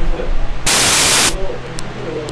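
Electrical static on a recording: a loud burst of hiss lasting under a second about halfway through, part of a pattern that repeats roughly every two seconds, over a steady low hum.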